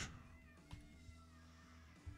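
Near silence: room tone with a faint cry that falls in pitch during the first second.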